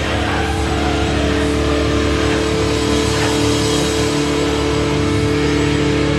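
Hardcore/metalcore band playing loud: heavy distorted electric guitars holding chords over bass and drums.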